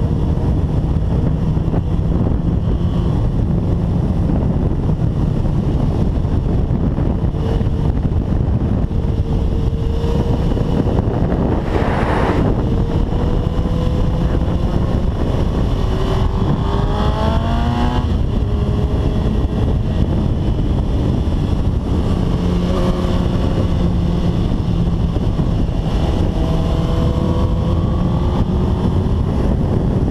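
Heavy wind buffeting on the microphone over a 2005 Suzuki GSX-R1000's inline-four at speed on track. The engine note climbs in pitch as the bike accelerates through the gears, most clearly just past halfway and again near the end.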